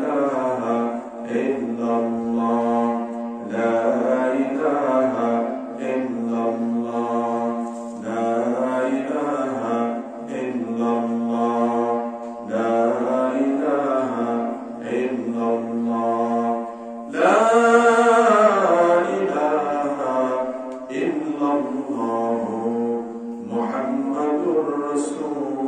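A man chanting melodically in Arabic into a microphone, drawing out long held notes in phrases of a few seconds each with short breaths between. About 17 seconds in comes a louder, higher-pitched phrase.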